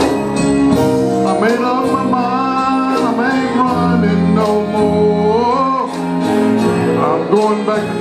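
Male gospel soloist singing into a handheld microphone, his voice sliding and bending through long phrases over steady held chords.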